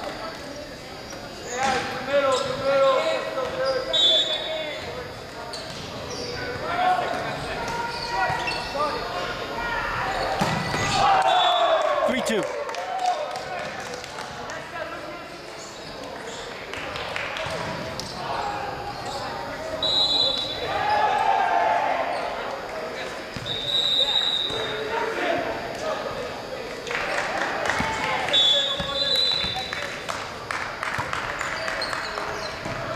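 Indoor volleyball play: players calling out to each other over the thud of ball contacts, echoing in a large gymnasium.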